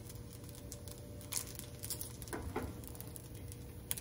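A silicone spatula scraping and tapping lightly in a hot cast iron skillet as a folded egg is lifted out, with a few scattered clicks and light crackles.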